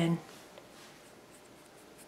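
Faint scratchy strokes of a fine paintbrush laying paint onto a small wooden cutout, over quiet room tone.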